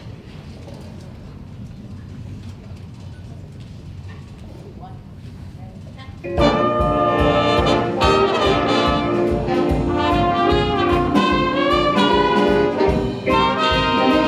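A school jazz big band comes in loudly about six seconds in after a quiet stretch, the trumpet section out front with saxophones and trombones over a steady beat from the rhythm section.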